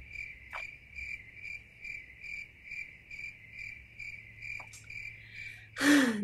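Cricket chirping in an even, steady run, about two chirps a second, cutting off abruptly near the end.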